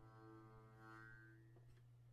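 Guitar A chord, its strings plucked one at a time, ringing faintly and dying away. A last, higher string sounds just under a second in, then the ringing is cut short with a soft click near the end, leaving a low steady hum.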